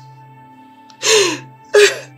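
A woman crying: two loud, breathy sobbing gasps over soft, steady background music, the first about a second in with a falling pitch, the second shorter, just before the end.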